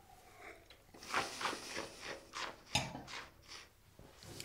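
A wine taster sipping wine and working it around the mouth: a string of short, soft slurps and swishes.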